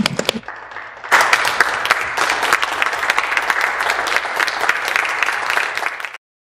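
Members of a legislative chamber applauding: a few scattered claps at first, then from about a second in a full, steady round of clapping from many people.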